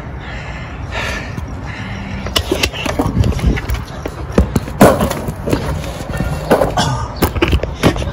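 Irregular knocks and clatter from walking off carrying a skateboard, the board's wheels and trucks bumping, over handling noise on a handheld camera. The knocks come thickest in the second half.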